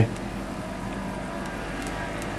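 Floured stockfish pieces going into hot olive oil in a frying pan, with a soft, steady sizzle and a few faint crackles near the end.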